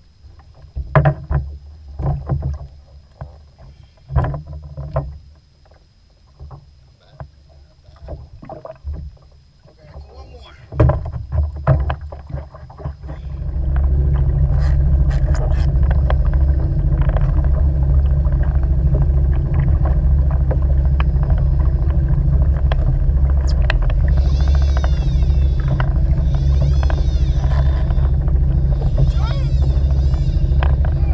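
Scattered knocks and clunks of handling gear on a kayak. Then, about halfway through, the kayak's small outboard motor starts and runs at a steady, loud drone.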